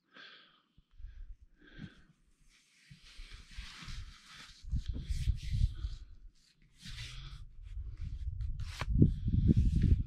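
Handling noise of a machete being put into a stiff new leather sheath: rustling and scraping as the blade slides in, over a low rumble, with a sharp click near the end.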